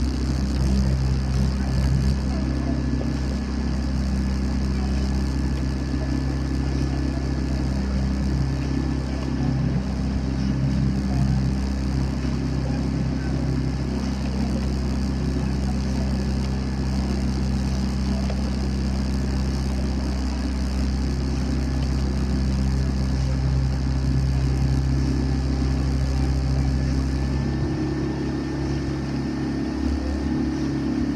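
Outboard motor of a motor launch running steadily at cruising speed, with a constant engine note. The note changes near the end, as if the throttle was adjusted.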